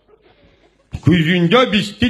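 A man's voice through a stage microphone, starting about a second in after a short quiet gap: a drawn-out voiced sound with no clear words.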